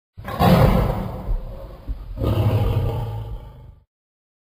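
A deep roar sound effect, heard twice: the second roar begins about two seconds in and cuts off suddenly just before the end.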